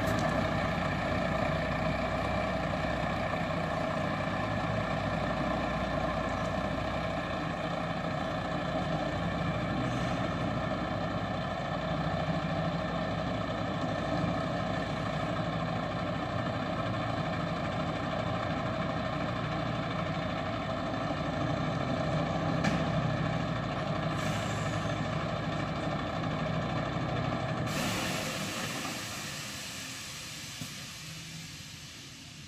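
Diesel engine of a MAN EfficientLine 2 tractor unit running steadily as the articulated truck reverses slowly onto a loading dock. Near the end a sudden long hiss of air sets in: the truck's air brakes being set.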